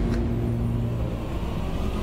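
Low, steady rumbling noise, a dramatic sound effect under the scene, with a held music chord fading out in the first second.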